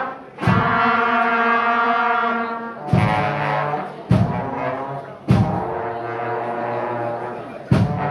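Elementary school wind band of flutes, clarinets and brass playing a Christmas carol arrangement. Long held chords are re-struck with a fresh accented entry every one to two seconds.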